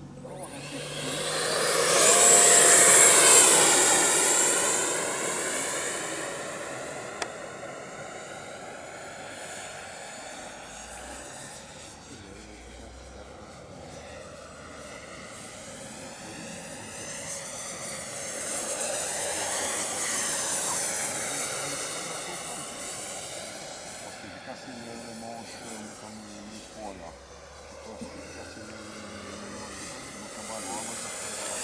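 Electric ducted fan (FMS 64 mm, 11-blade, brushless motor) of a 3D-printed De Havilland Vampire RC jet, giving a high whine with a whoosh that rises and falls as the model flies past. It is loudest about two to four seconds in, as it passes close after launch, then fades, with a second, fainter pass around twenty seconds in.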